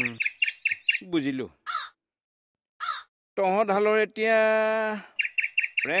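A small bird chirping in quick, short repeated notes, about six a second, at the start and again near the end. In between come two long, drawn-out calls, steady in pitch and louder than the chirps.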